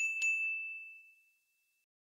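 Notification-bell 'ding' sound effect: two quick strikes at the start, then one high ringing tone that fades away over about a second and a half.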